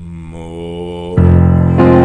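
Bowed cello and piano playing sustained low notes, entering softly and then growing much louder just over a second in.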